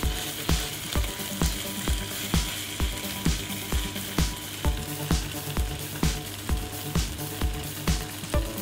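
Kimchi and pork belly sizzling in a frying pan as they are stir-fried, a steady hiss, over background electronic music with a steady beat of about two pulses a second.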